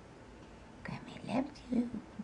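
Soft speech, nearly a whisper, starting about a second in, over quiet room tone.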